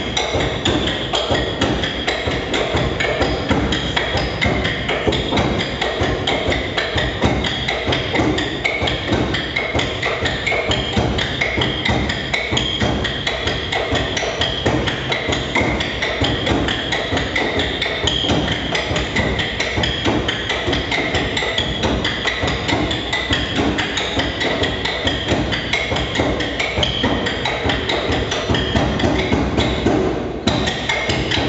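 Wooden sticks clacked against one another by several percussionists in a fast, interlocking rhythm, a dense run of sharp wooden knocks that keeps up without a break.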